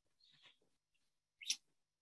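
Near silence in a pause of a woman's narration, broken by a faint breath about half a second in and a short, sharp breath or mouth sound about one and a half seconds in.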